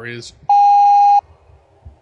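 A single loud electronic beep, one steady tone lasting under a second that starts and stops abruptly: a censor bleep blanking out the telephone number being read out.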